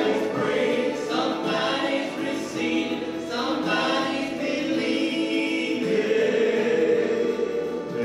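Gospel trio of two men and a woman singing a gospel song in harmony into microphones, amplified through a PA.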